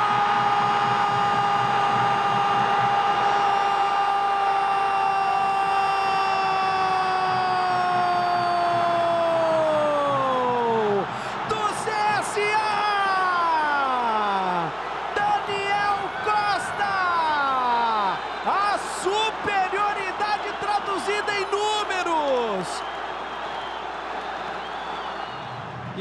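Brazilian football TV commentator's drawn-out goal call: one long held shout of 'gol' lasting about eleven seconds and dropping in pitch at its end, followed by several shorter shouted calls that each slide downward. A steady wash of stadium crowd noise runs beneath.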